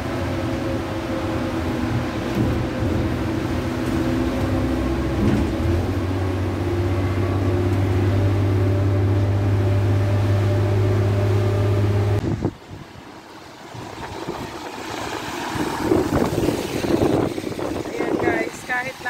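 Coach's diesel engine running with a steady drone, heard from inside the coach as it drives on a wet road; the low note grows stronger about five seconds in. It cuts off suddenly about twelve seconds in and gives way to the hiss of car tyres passing on a wet road, which grows louder near the end.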